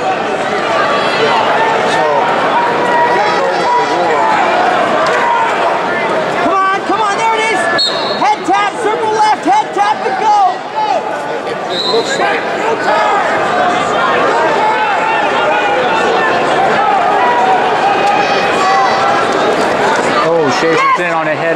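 Arena crowd: many voices talking and shouting over one another. Two brief high-pitched tones sound about eight and twelve seconds in.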